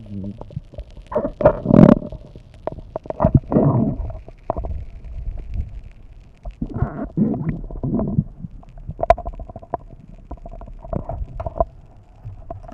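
Muffled underwater gurgling and bubbling in irregular bursts, with scattered sharp clicks, heard through a camera's waterproof housing.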